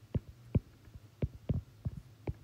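A stylus tapping and striking a tablet screen while hydrogen symbols are written by hand: a handful of short, light taps at an irregular pace, over a faint steady low hum.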